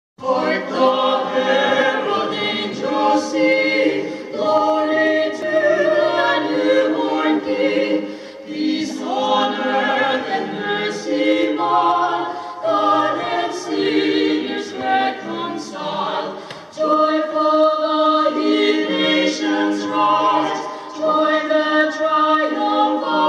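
Small mixed-voice vocal ensemble of men and women singing a Christmas carol in close harmony, unaccompanied, in phrases with short breaks about eight and sixteen seconds in.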